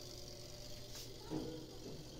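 Suggar electric clothes spin dryer running, a faint steady low hum from its motor and spinning drum.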